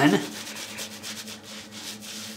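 Wet badger-hair shaving brush (a 24 mm Manchurian silvertip) scrubbing shaving-soap lather over two-day stubble: soft, irregular bristle-on-skin rubbing strokes as the lather is worked up on the face.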